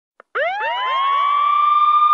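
A siren winding up: a pitched tone that starts about a third of a second in, rises steeply, then levels off and holds steady.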